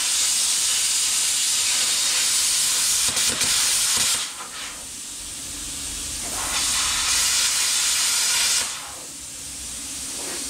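Plasma cutter cutting steel brackets off a rear axle housing: a loud, steady hiss. The first cut stops about four seconds in, and a second cut runs from about six and a half seconds to near nine seconds, with a quieter hiss in between.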